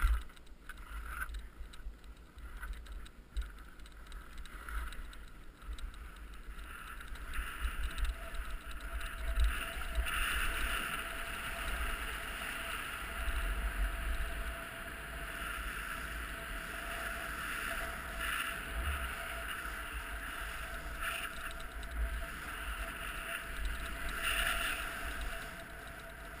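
Edges sliding and scraping over firm, hard-packed snow during a descent, a steady hiss that builds from about seven seconds in as speed picks up. Low wind buffeting rumbles on the camera microphone throughout.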